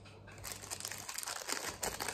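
Foil candy wrapper crinkling as it is unwrapped by hand, starting about half a second in and going on as quick, dense crackles.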